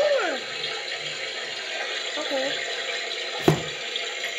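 Water running steadily from a tap into a bath, a continuous hiss. A single sharp knock about three and a half seconds in.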